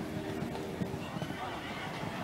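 Spectators chatting in the background, with a horse giving a brief whinny in about the first second.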